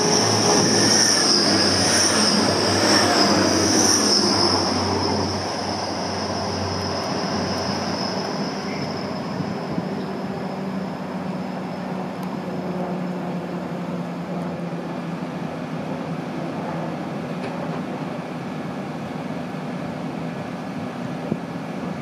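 Class 180 'Adelante' diesel multiple unit running through a station under power, its underfloor diesel engines and wheels on the rails. A high whine and the loudest running fill the first few seconds, fading by about eight seconds into a lower, steadier train sound.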